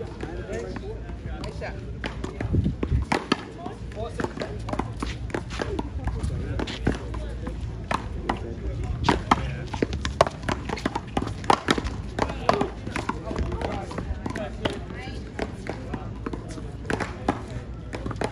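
One-wall paddleball rally: repeated sharp smacks of paddles hitting the rubber ball and the ball striking the concrete wall, coming irregularly and thickest around the middle, with voices in the background.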